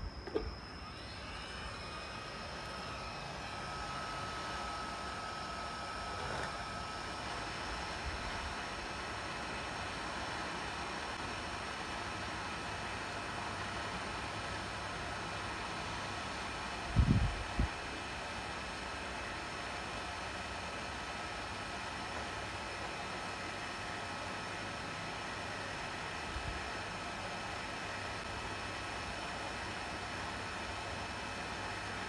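Hot air rework station blowing steadily, a hiss with a thin whine, as the failed 3V/5V power controller IC is heated off the laptop motherboard for replacement. A couple of dull knocks about seventeen seconds in.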